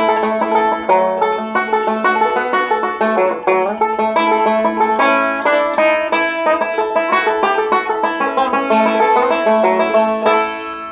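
Five-string banjo picked in a fast, continuous run of notes: bluegrass licks played over different chords.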